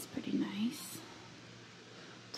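A woman's voice: a brief soft murmur and a whispered sound in the first second, then only quiet room tone.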